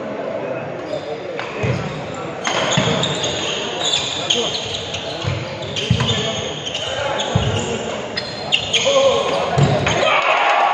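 Badminton doubles rally on a wooden indoor court: rackets striking the shuttlecock with sharp clicks, shoes squeaking, and feet thudding on the floor at irregular moments throughout.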